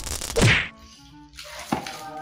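An added editing sound effect: a sharp whack with a quick downward swoosh about half a second in, followed by a few quiet, steady music notes.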